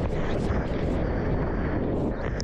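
Rushing whitewater and wind rumbling on a camera microphone held just above the water as a surfboard rides through the foam of a broken wave: a loud, steady roar.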